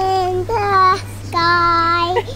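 Young child singing a nursery song in long held notes, three of them here, over a steady low hum.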